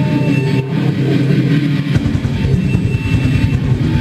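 Live heavy metal band playing an instrumental passage: loud distorted electric guitars, with a heavy bass and drum low end coming in about halfway through.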